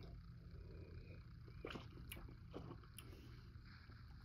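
Near silence: quiet room tone with a few faint small mouth clicks and smacks as a sip of whiskey is taken and held on the palate.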